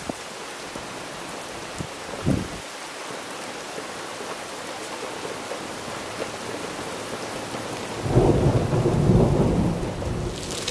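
Steady rain falling during a thunderstorm, with a short low thud about two seconds in and a roll of thunder rumbling for about two seconds near the end.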